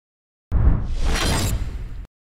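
A logo-intro sound effect: after a brief silence, a sudden crash with a deep boom about half a second in, fading away over about a second and a half.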